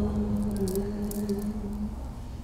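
A monk's voice chanting in a low monotone: one long held note that dips slightly in pitch partway through and fades out at the end.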